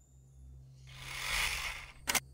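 A whoosh transition sound effect: a rush of noise that swells for about a second and fades away just before the cut.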